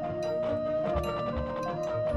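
Marching band music: an amplified flute solo holds one long note over ringing mallet percussion from the front ensemble, with low bass notes coming in about a second in.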